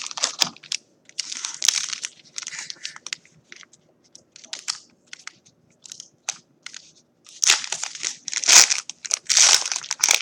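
Foil wrapper of a Panini Classics football card pack crinkling as it is handled and torn open, in irregular crackles that grow denser and louder in the last few seconds.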